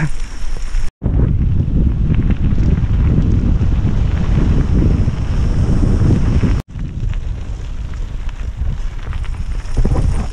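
Heavy wind buffeting a bike-mounted camera's microphone while riding a gravel road, a loud, rough rumble that is cut by two brief dropouts, one about a second in and one just before seven seconds.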